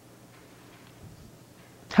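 Quiet room tone with a faint steady hum during a pause in speech, then a woman's voice starts speaking right at the end.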